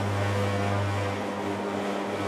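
Electric food-processing machine, a mincer-extruder fed through a plunger chute, running with a steady low hum.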